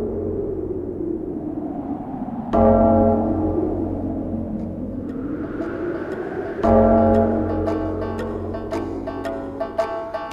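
Background music opening with a deep gong struck twice, about four seconds apart. Each stroke rings out and fades slowly. Quick plucked-string notes come in over the last couple of seconds.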